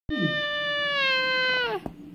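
A baby's high-pitched squeal, the kind of screech nicknamed a pterodactyl noise: one long call held about a second and a half, then dropping sharply in pitch as it ends.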